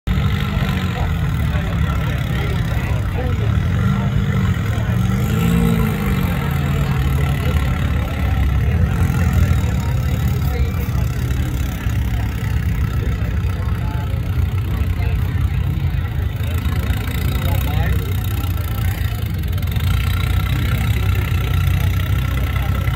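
Rock-crawler buggy's engine running at a low idle while the buggy crawls over a rock ledge, with two short revs that rise and fall a few seconds in. Voices of onlookers mix in.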